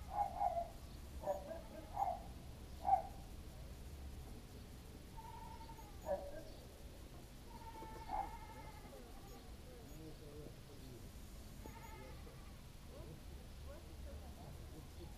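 Faint pitched animal calls, like bleating: four short calls in quick succession in the first three seconds, then a few longer, drawn-out calls, over a low steady rumble.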